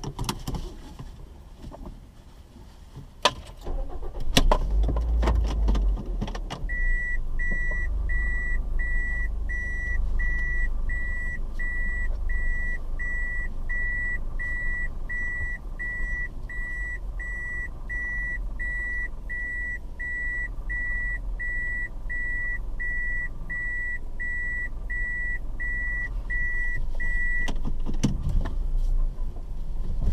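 A car engine starting about four seconds in after a few clicks, then idling as the car backs out of a parking space. Over it runs the car's reversing warning: a steady train of short, high, same-pitch beeps, about three every two seconds, which stops near the end.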